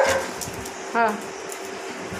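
A dog barks once, loud and sharp, right at the start.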